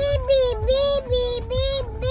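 A toddler singing a run of short syllables on one high, nearly steady pitch, about five notes in two seconds.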